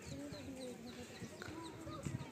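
Outdoor ambience: a drawn-out voice in the background, held on long gliding notes, with a high bird-like chirp repeating about three times a second and a low rumble underneath.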